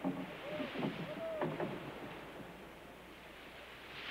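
Water and wind noise at sea around a small open fishing boat, with a few short rising-and-falling calls in the first second and a half.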